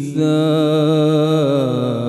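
A man's voice reciting the Quran in a melodic, chanted style. He takes a quick breath just after the start, then holds a long, slowly wavering note.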